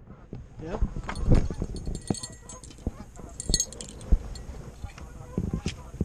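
Scattered knocks and light clinks from a spinning rod and reel being handled, with a quick run of fine ticks about halfway through.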